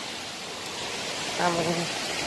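Waterfall rushing steadily down a steep rock face, an even roar of falling water. A voice speaks one short word about one and a half seconds in.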